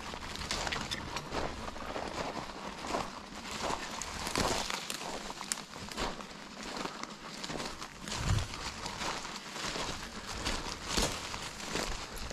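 Irregular crunching and rustling of footsteps on a gravel track covered in dry fallen leaves, with no clear steady rhythm.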